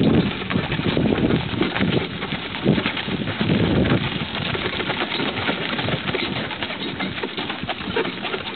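Hooves of a pair of carriage horses clopping in a quick, irregular patter on a paved road as the carriage rolls along, with low rumbling patches in the first half.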